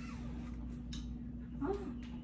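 Quiet room tone: a steady low hum, with a few faint clicks and a brief soft vocal sound near the end.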